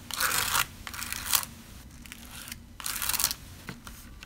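Palette knife scraping glitter paste across a plastic stencil on card, in three short strokes: near the start, a little over a second in, and about three seconds in.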